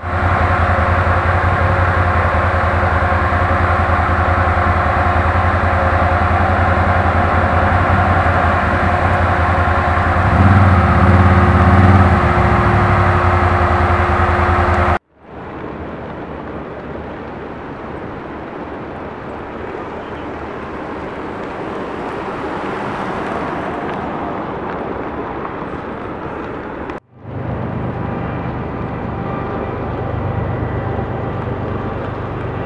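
A motor engine running steadily and loudly, its even hum swelling a little partway through. About halfway it cuts off abruptly into a softer, even rushing noise, which breaks off again briefly a few seconds before the end, after which a fainter hum returns.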